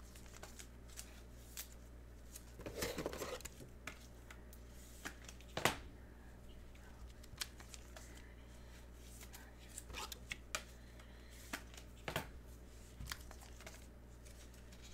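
Trading card packaging and cards being handled on a desk: faint scattered clicks and rustles, with a longer rustle about three seconds in and a sharper click just after five seconds.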